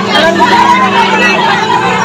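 Women's voices talking in Bengali, more than one at a time, over a steady low hum.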